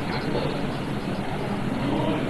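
Steady background murmur and hum of a parliament chamber heard through the broadcast sound feed, with faint, indistinct voices in it.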